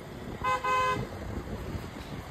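Vehicle horn giving two short toots in quick succession, about half a second in, over the low rumble of road and engine noise from a moving vehicle.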